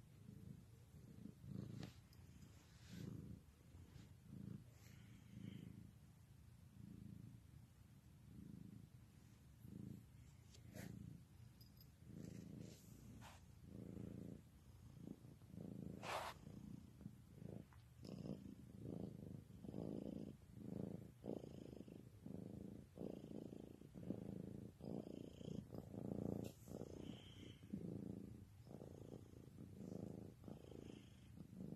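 Domestic cat purring steadily while having its chin and cheeks scratched, the purr swelling and fading in an even rhythm with each breath and growing stronger in the second half. A brief sharp noise comes about halfway through.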